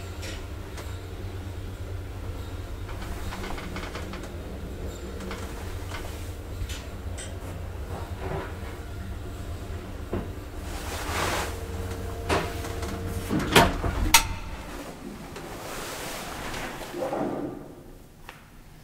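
Old Svenska Hiss traction elevator travelling, its motor humming steadily under scattered clicks and knocks. A few sharp clunks come as the car stops, then the hum cuts out about two-thirds of the way in. Near the end the car door is opened with a rattle.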